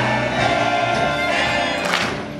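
A children's choir singing together to music.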